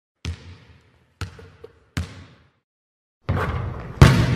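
A basketball bouncing three times, each bounce a sharp thud with a short ring. Near the end, the steady noise of an arena crowd from the game broadcast comes in.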